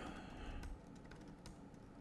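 Faint typing on a computer keyboard: a few irregularly spaced key clicks.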